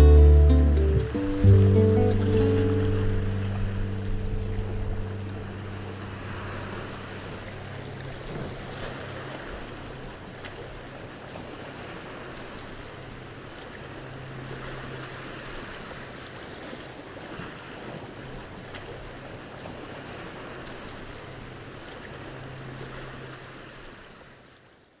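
The closing chord of a havanera on acoustic guitar and double bass, struck about a second and a half in and left to ring out and fade over several seconds. After it, sea waves washing against rocks, with a low steady hum underneath.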